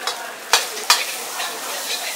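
Metal ladle stirring and scraping egg fried rice in a wok over a gas flame, with frying sizzle underneath; two sharp clanks of ladle on wok about half a second and a second in.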